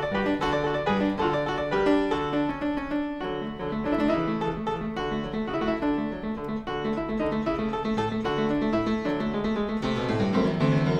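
Fortepiano playing a Classical-era keyboard piece, busy running figuration over a repeated low accompaniment pattern that comes in a few seconds in.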